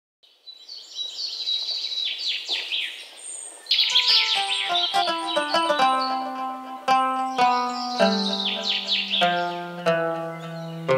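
Birds chirping and twittering, joined about four seconds in by music built on quick plucked-string notes over a bass line, with the birdsong going on above it.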